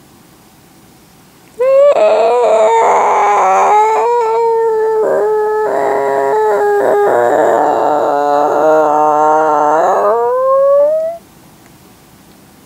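A woman's long, drawn-out vocal noise made with the mouth, like a howl or whine. It starts about one and a half seconds in with an upward slide, holds a wavering pitch, drops lower partway through, then slides up again before breaking off about a second before the end.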